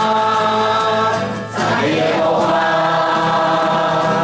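Group singing a Chinese-language worship song, led by a man's voice over acoustic guitar, in long held notes. About one and a half seconds in there is a brief dip before the next phrase.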